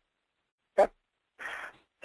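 Mostly dead silence, broken by a short spoken "OK?" a little under a second in and a brief breathy noise a moment later.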